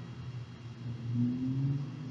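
A pause in a woman's talk, with a steady low hum underneath. About a second in comes a soft hummed 'mm', slightly rising and lasting under a second.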